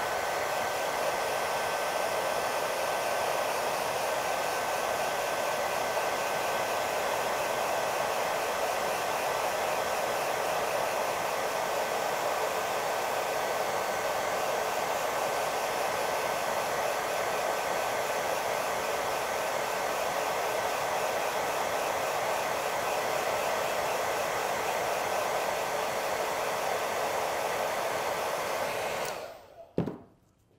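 Hair dryer blowing steadily with a thin whistle, drying wet paint on a model figure; it switches off about a second before the end.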